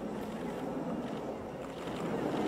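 Steady low background noise with no distinct events, the even rush of outdoor ambience.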